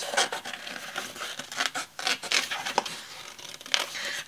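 Sheets of printed craft paper rustling and crinkling as they are lifted, flipped and shifted on a desk, with irregular scratchy swishes and small clicks.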